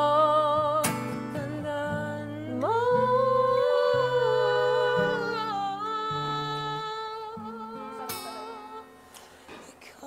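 Acoustic guitar played with a voice humming long held notes over it, the notes wavering with vibrato. The music grows quieter near the end.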